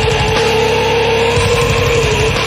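Heavy metal band recording: a long held note over fast, dense drums and bass.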